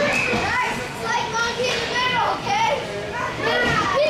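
Children shouting and calling out in a series of high-pitched calls, over the general noise of the rink.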